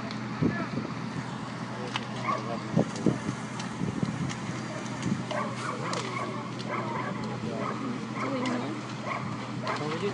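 A burning house crackling with scattered sharp pops, while a dog barks and people talk in the background over a steady low hum.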